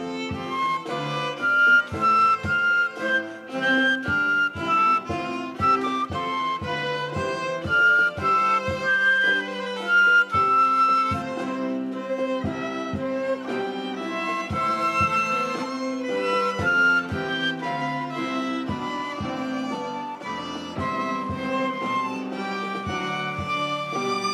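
A small instrumental ensemble playing a melodic piece: violin and flute over grand piano accompaniment.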